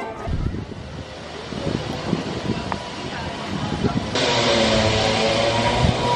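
Outdoor street noise. About four seconds in it jumps abruptly to a louder, steady hum with a low drone like a vehicle engine running nearby.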